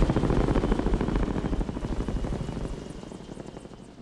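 Helicopter rotor chop, a rapid, even pulsing over a low rumble, fading away steadily.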